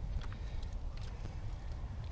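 Wind buffeting the microphone as a steady low rumble, with a few faint light clicks from metal tongs working ribs in a foil pan.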